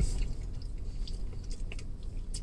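A man chewing a mouthful of soft carne asada taco, with faint, soft, irregular mouth sounds over a low steady hum.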